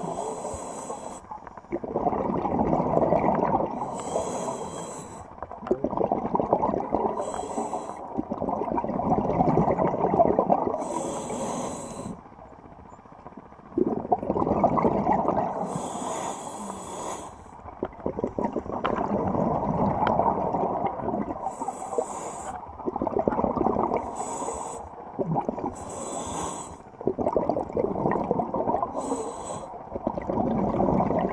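A scuba diver breathing through a regulator underwater: about nine short hissing inhalations, each followed by a longer, louder rush of exhaled bubbles.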